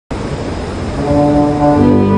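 Quartet of tuba, piano accordion, saxophone and slide trombone playing the opening of a hymn in held chords. The sound starts suddenly and low, and clearer sustained notes in several voices come in about a second in.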